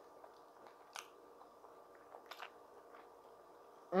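Quiet, mouth-closed chewing of a soft corn-masa tamale, with a few faint wet mouth clicks, the sharpest about a second in.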